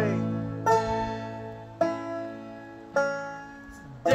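Banjo and acoustic guitar playing a slow instrumental passage: a chord is struck three times, about once a second, and each is left to ring and fade.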